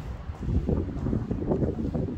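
Irregular low rumbling and buffeting on the microphone of a handheld camera being carried along, louder from about half a second in.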